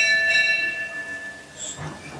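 A bell struck once: a clear ring with several overtones that sets in suddenly and fades away over about two seconds.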